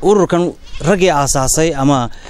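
A man speaking in an interview: only speech.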